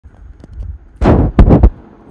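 Three loud, sudden thumps in quick succession about a second in, the first a little longer than the other two.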